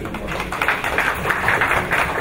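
Audience applauding: a dense, steady patter of many hands clapping.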